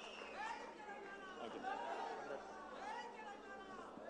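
Faint chatter of several people's voices, away from the microphone.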